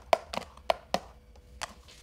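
Wooden spatula knocking against the metal pot of an electric wax warmer as the wax is stirred: a quick run of sharp taps in the first second, then one more about a second and a half in.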